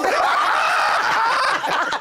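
Hearty laughter from several people at once, loud and overlapping, dying down near the end.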